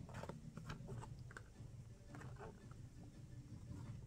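Small cardboard box handled by hand, its lid flaps moved: faint scattered taps and rustles over a low room hum.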